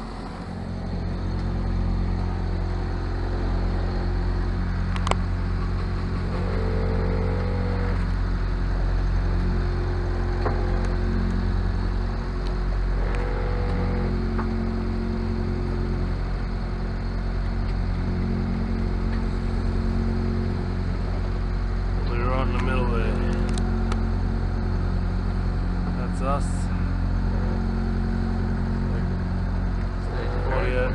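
A sailing yacht's inboard engine running steadily with a low, even drone: the boat is motoring through a windless calm with its sails slack.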